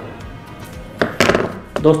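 Quiet background music, then about a second in two sharp clicks and knocks from hands and a screwdriver handling a plastic laser toner cartridge.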